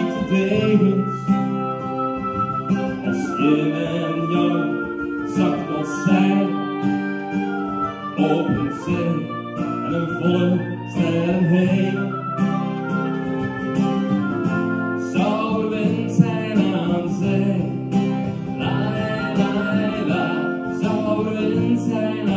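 Oboe playing a melody over acoustic guitar accompaniment, an instrumental passage between sung verses.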